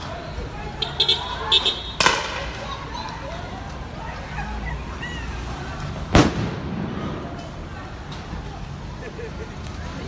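Two loud bangs about four seconds apart, typical of police crowd-dispersal rounds or stun grenades. The second, louder one is followed by a low rumbling echo. A few shorter sharp sounds come just before the first, over distant shouting voices and street traffic.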